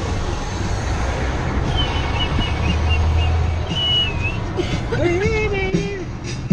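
Open-air tour cart driving along a city street: steady road and wind noise with a low hum. Two brief high whistling tones come in the middle, and a voice comes in near the end.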